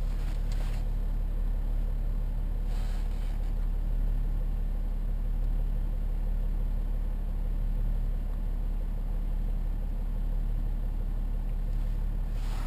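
Diesel engine of a BMW X5 35d idling, a steady low hum heard from inside the cabin.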